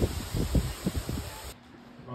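Wind buffeting the microphone outdoors in irregular low gusts over a steady hiss, cutting off abruptly about one and a half seconds in, leaving faint indoor room tone.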